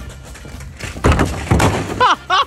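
Plastic wheelie bin knocked over onto gravel: two loud crashes about a second in, half a second apart, as it hits the ground and its rubbish spills out.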